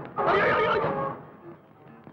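A short, loud wavering cry lasting about a second, which then fades away, over quieter background music.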